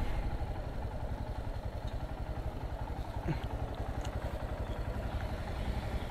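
Motorcycle engine running at low revs with a steady, even beat.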